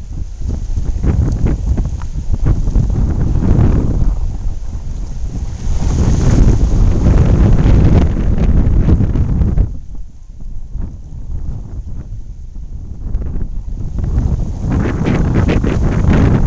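Wind buffeting the phone's microphone in gusts: a loud, low rumble that eases about ten seconds in and builds again near the end.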